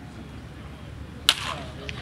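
A baseball bat hitting a ball once in batting practice: a single sharp crack about a second and a quarter in, followed by a smaller click shortly after.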